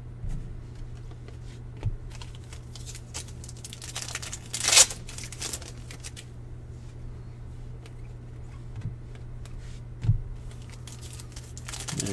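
Trading cards being flipped through and handled by hand: soft slides and small clicks of card stock, with one louder, brief crinkle about five seconds in. A steady low hum runs underneath.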